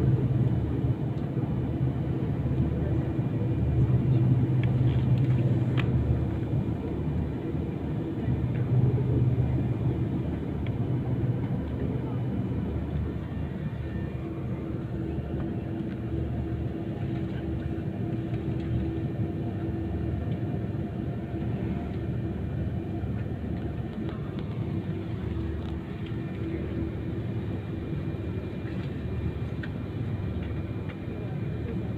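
Airliner cabin noise on the ground before take-off: the jet engines at idle give a steady rumble with a low hum, a little louder for the first ten seconds or so before settling.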